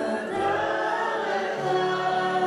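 A woman singing a slow Hebrew prayer song to acoustic guitar, with other voices singing along together.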